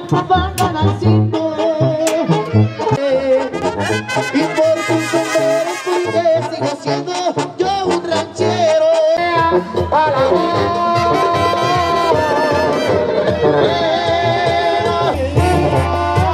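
Mexican brass band music in banda style, with brass playing the melody over a bouncing bass line; the music changes section about nine seconds in.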